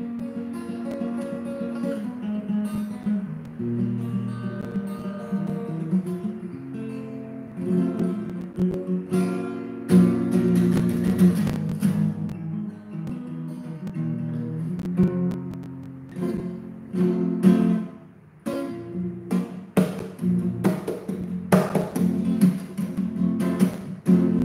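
Solo acoustic guitar: picked chords and single notes, turning to hard, rapid strumming with sharp strokes in the last few seconds.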